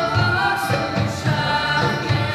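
Ensemble of recorders with trumpets playing a melody together in held notes, over a low pulsing beat.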